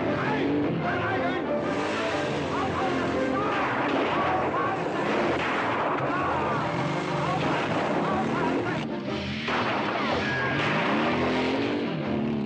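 Motorcycle engine revving up and down under a film soundtrack, with orchestral music mixed in.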